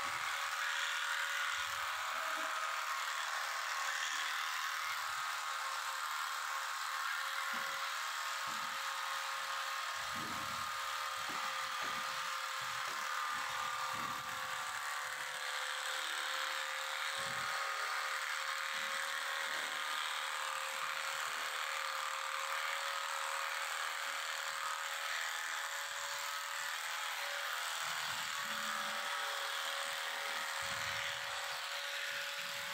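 Electric animal clippers running at a steady buzz, trimming the hair of a cow's tail, with scattered low knocks.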